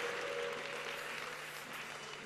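Congregation applauding in response to a call to clap, the clapping gradually dying away.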